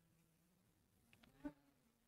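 Near silence: room tone, with one faint, short sound about one and a half seconds in.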